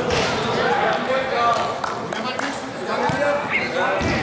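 Voices of players and spectators calling out in an indoor football hall, with a few dull thuds of the ball being kicked or bouncing.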